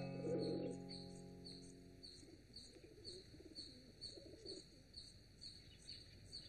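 Sustained notes of film music dying away over the first two seconds, then faint high chirps repeating evenly, about two a second, as the film's background ambience.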